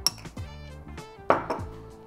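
Background music, with a short clink near the start and a louder clatter about a second and a half in: a metal spoon and a small ceramic ramekin being set down on the table.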